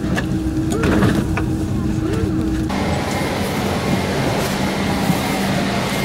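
Steady hum of a taxiing Airbus A330's GE CF6 turbofan engines, heard from inside another airliner. About three seconds in, it cuts abruptly to the steady noise of an airliner cabin with a low hum.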